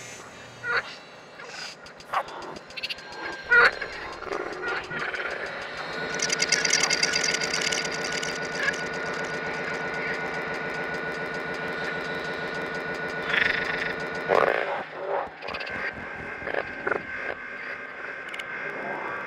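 Frog calls electronically processed through Kyma: scattered short croaks and clicks, then from about six seconds a dense, steady buzzing drone with many overtones. The drone breaks off at about fourteen seconds, and scattered calls follow.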